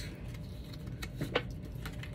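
Light handling noise: a few soft clicks and taps near the middle, over a low steady hum.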